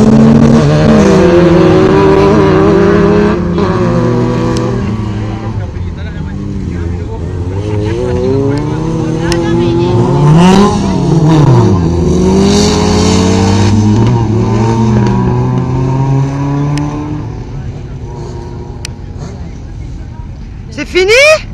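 Autocross race cars racing on a dirt track: engines revving hard, rising and dropping in pitch through gear changes, with several cars heard at once and one passing about ten seconds in. The sound is loudest at the start and fades near the end as the cars move away.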